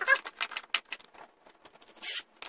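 Irregular clicks, knocks and light rattles of a corded power drill and small metal parts being handled and seated into a plywood mount; the drill is not running.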